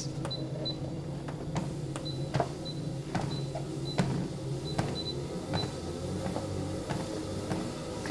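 Treadmill running with a steady motor hum and footfalls on the moving belt about twice a second. Short high beeps come from the console as its buttons are pressed, about ten times through, in step with the incline being raised.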